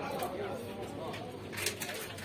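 Indistinct voices talking in the background, with a few short hissing sounds near the end.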